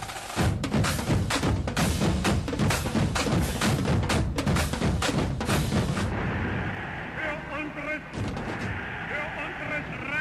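Dance-performance soundtrack: a loud, dense run of sharp percussive hits, several a second, for about six seconds, then a quieter stretch with faint voices in the recording.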